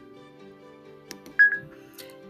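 A single short, high beep about one and a half seconds in: the Chromebook's dictation tone, signalling that the microphone has started listening. Steady soft background music runs underneath.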